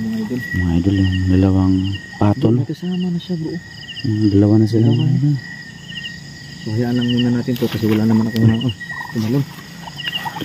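Crickets chirping in a steady repeating rhythm. Over them come three or four low, level hum-like voice sounds of about a second each, the loudest thing here, with no words in them.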